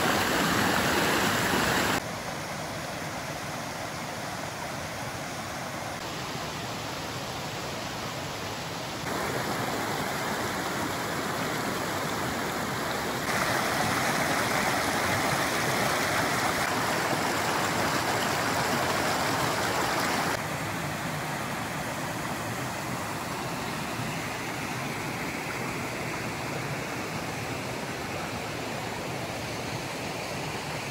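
A small rocky stream running over stones and little cascades: a steady rush of water. Its loudness jumps up or down abruptly a few times and is loudest for several seconds in the middle.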